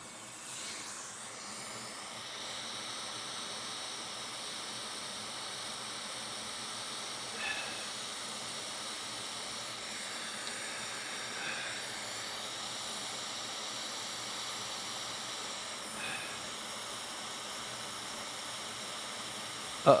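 Hot air rework station blowing a steady hiss of air, coming up about a second in, while it heats a cracked capacitor off a logic board to melt its solder. A few faint brief sounds rise over the hiss.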